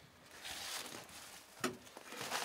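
Faint handling noise: a short hiss about half a second in, then a single sharp click near the end.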